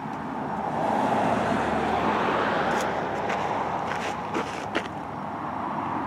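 Outdoor road-traffic noise: a steady rush that swells about a second in, with a few faint clicks around the middle.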